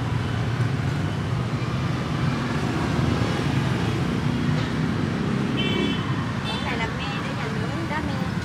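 Steady low rumble of passing street traffic, with a few short high tones a little past halfway.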